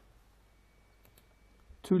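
A couple of faint computer mouse clicks over quiet room tone, about a second in; a man's voice starts near the end.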